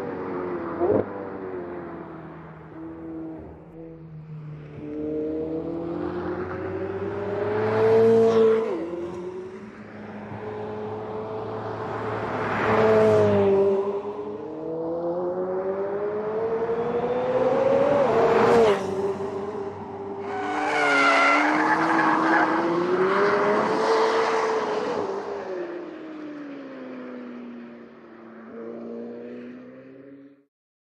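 McLaren 765LT's twin-turbo V8 on a race track, revving up under acceleration and falling away on each lift or downshift, over and over. It is loudest about 8, 13 and 18 seconds in as the car comes close.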